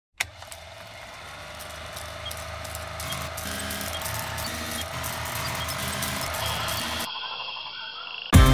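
Intro sound design under a film-countdown opening: a sharp click, then a steady humming drone with a stepping low line and scattered ticks that slowly grows louder. About seven seconds in it cuts to a thinner, quieter tone.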